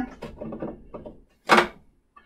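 Light knocks and scrapes of a wooden insert being fitted into the sander's table opening, followed by one sharp knock about a second and a half in.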